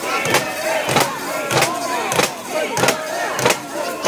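Crowd of portable-shrine bearers shouting and chanting together, over a sharp clack that comes about every 0.6 seconds, a steady beat to the carrying.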